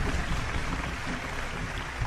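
A group of people applauding: a steady, noisy clatter of many hands.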